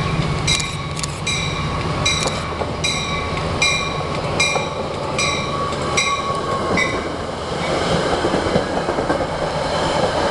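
Metra MP36PH-3S diesel locomotive passing close, its engine drone fading as it goes by, while a bell rings about once a second until about seven seconds in. Then the bilevel coaches roll past with steady wheel-on-rail rumble.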